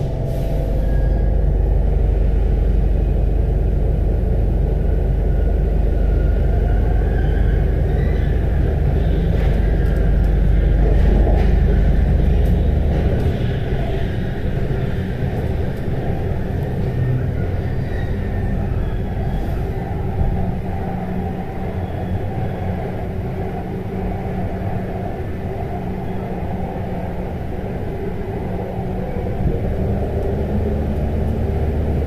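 Rubber-tyred MP05 metro train running through a tunnel, heard from on board: a steady low rumble with a faint motor whine gliding up and down in pitch. The rumble eases off about halfway through.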